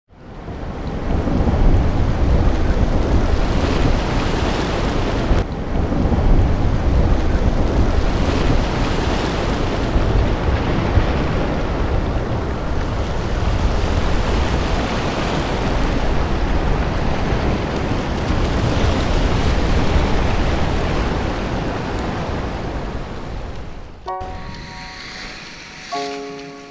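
Ocean surf and wind rushing loudly, with a heavy low rumble that swells and eases. It fades in at the start and cuts off suddenly about 24 seconds in, when a few held notes of music begin.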